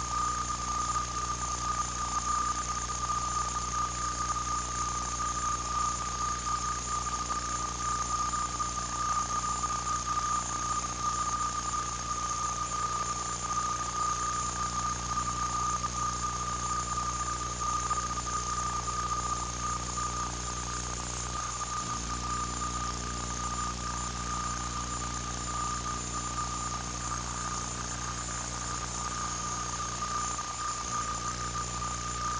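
A steady high-pitched electronic whine with a low electrical hum beneath it, unchanging throughout: noise on the audio track of an old home-video recording, with no sound of the game coming through.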